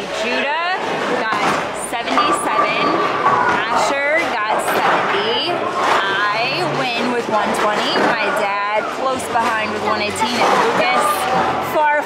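People talking, voices overlapping, with no other clear sound standing out.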